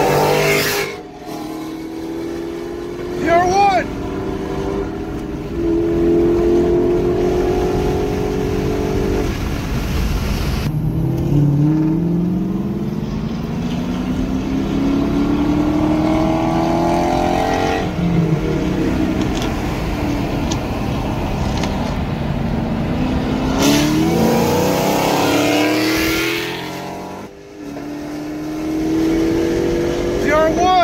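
Car engines at full throttle, heard from inside a chasing car. The pitch climbs in long pulls and drops briefly at each gear change.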